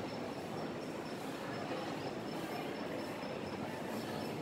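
Steady room noise with a faint, wavering high-pitched whine above it.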